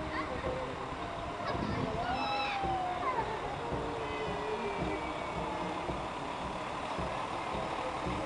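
Diesel lorry pulling a parade float drives slowly past, its engine running steadily under the voices of people on the float and around it; a drawn-out call rises and falls about two seconds in.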